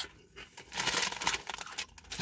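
Plain potato crisps being crunched and chewed: a crackly burst lasting about a second, starting just under a second in.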